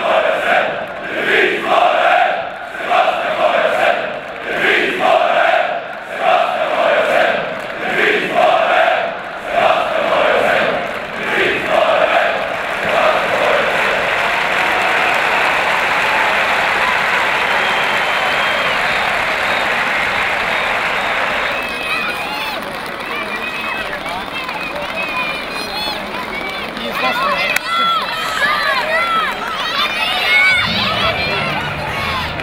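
Football supporters in a packed stand chanting in a loud rhythmic chant, about one beat a second, then breaking into a sustained cheer. After about twenty seconds the crowd drops back behind nearer voices.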